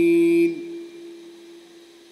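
A man's voice chanting in Quran-recitation style holds one long, steady note, which stops about half a second in. Its echo through the sound system then dies away slowly.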